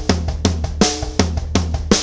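Acoustic drum kit playing a single-pedal exercise: single strokes alternating between a hand on the drums and the kick drum, grouped in threes, with a brighter cymbal-accented stroke about once a second over the ringing low drums.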